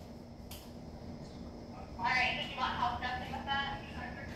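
A voice speaking quietly for a couple of seconds in the second half, over a low steady hum, with a single click about half a second in.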